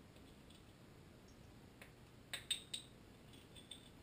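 A few light clicks of a small engine's piston, wrist pin and connecting rod touching as they are handled and lined up, with a short cluster about halfway through. Otherwise the room is very quiet.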